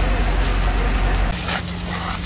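Steady low engine rumble with the hiss of fire hoses spraying at a house fire. About a second and a half in the rumble cuts off abruptly, leaving a lighter steady hum and hiss with a knock.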